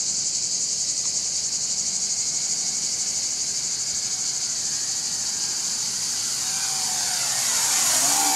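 Insects buzzing steadily and shrilly. In the last two seconds the motors and propellers of a WLToys V333 Cyclone II quadcopter flying close by whine louder, their pitch wavering up and down as the throttle changes.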